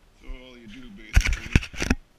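A man's brief wordless vocal sound, then about a second in a quick run of loud knocks and rattling that lasts most of a second.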